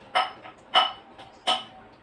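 A dog barking: three short, sharp barks about two thirds of a second apart.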